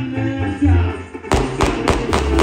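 Loud Latin American dance music, with a quick run of sharp percussive hits in the second half.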